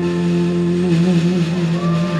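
Live rock band holding the closing chord of a power ballad, a loud steady sustained note with a slight waver.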